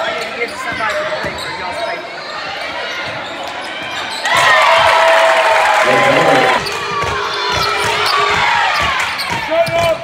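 Gym sound of a basketball game: ball dribbling and sneakers squeaking on the hardwood under spectators' voices and shouts. The crowd gets suddenly louder about four seconds in and eases back a couple of seconds later.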